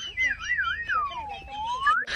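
A whistled comedy tune in background music: a few quick warbles on one high pitch, then one long swoop down and back up, a phrase that repeats as a loop.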